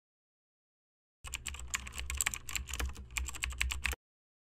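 Computer keyboard typing: a fast, irregular run of key clicks over a low hum, starting about a second in and cutting off suddenly.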